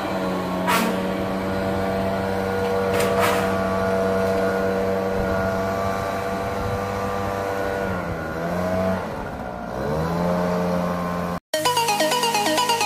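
Echo 770 backpack leaf blower's two-stroke engine running steadily at high throttle. Near the end its note sags twice and climbs back as the throttle is eased and opened again. It is cut off just before the end by electronic dance music.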